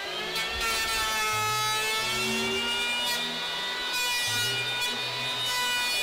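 Electric hand planer running with a steady high whine as it cuts across a foam surfboard blank, its pitch sagging slightly now and then under the load of the pass.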